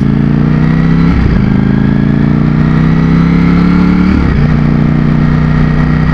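Ducati Streetfighter V4's Desmosedici Stradale V4 engine pulling through the gears, its pitch rising steadily and dropping at two upshifts, about a second in and about four seconds in.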